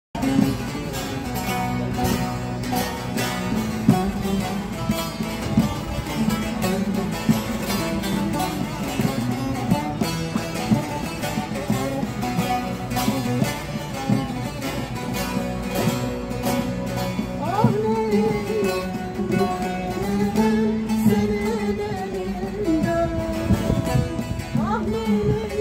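Bağlama (long-necked Turkish saz) played with quick plucked notes, an instrumental introduction to a Turkish folk song. About eighteen seconds in, a woman's voice comes in with long, wavering sung notes over it.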